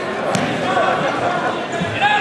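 Spectators and coaches shouting over one another in a reverberant gym, with a few dull thumps, the first with a sharp click about a third of a second in.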